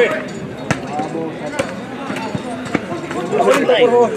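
Football being kicked during a small-sided match on artificial turf: several sharp kicks or knocks spread across a few seconds, over the voices of players and spectators, with shouting near the end.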